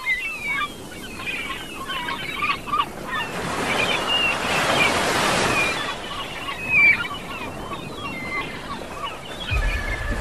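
Gulls calling over and over, short squealing cries, over the rush of surf that swells for a few seconds in the middle.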